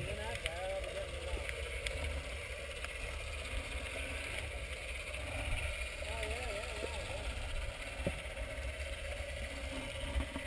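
Muffled underwater sound through a submerged action camera's housing: a steady low rumble, with a wavering, warbling tone just after the start and again about six seconds in, and a sharp click about eight seconds in.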